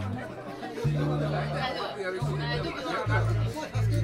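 A live band's low, held notes from the stage, several in a row, each about half a second to a second long with sharp starts and stops, under talking and chatter in the room.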